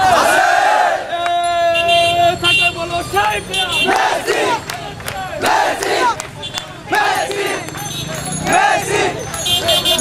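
Crowd of young football supporters shouting and cheering as they march, many voices overlapping. A steady held tone sounds for about a second and a half near the start.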